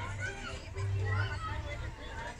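Many people talking at once, children's voices among them, over a steady low hum.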